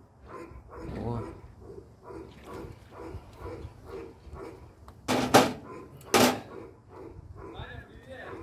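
An animal calling repeatedly in short calls, about two to three a second, with two loud sharp sounds about five and six seconds in.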